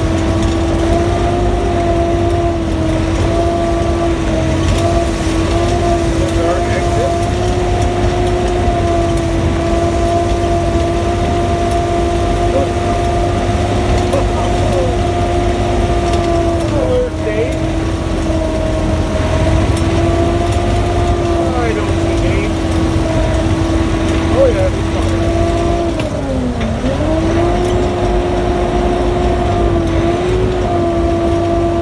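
Sherp amphibious ATV running under way, heard from inside the cab: a steady engine and drivetrain whine over a low rumble. The whine dips in pitch once near the end, then comes back up.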